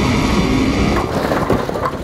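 A motorised go-kart-style desk driving at speed: loud, rough motor and wind noise buffeting the on-board microphone, changing about a second in.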